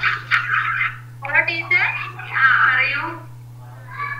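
A person speaking in short phrases over a video-call line, with a steady low hum underneath.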